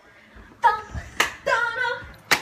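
Women's voices laughing and calling out excitedly in drawn-out notes, with one sharp hand clap a little after a second in.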